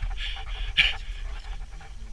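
A man panting close to the microphone: a few short, heavy breaths, the loudest a little under a second in.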